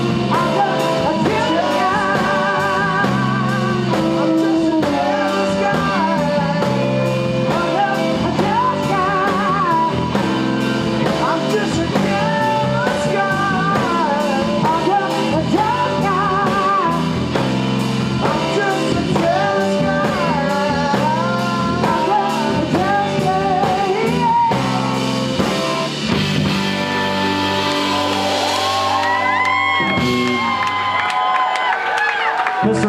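Live rock-blues band with electric guitar, bass and drums playing behind a woman singing lead with a wide vibrato. About 26 seconds in the beat stops and the band holds a final chord while the cymbals ring out, ending the song.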